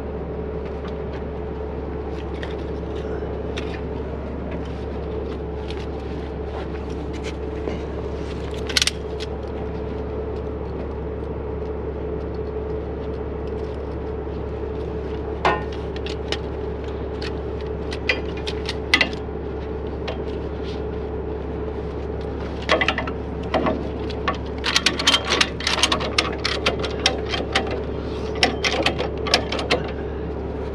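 Heavy truck's diesel engine idling steadily, with scattered sharp metal clanks and rattles of hooks and rigging being handled. The clanks come a few at a time at first, then thick and fast over the last several seconds.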